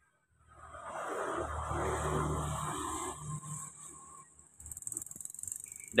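A motor vehicle's engine, coming up about half a second in, loudest around two seconds, then fading away, over a steady high hiss.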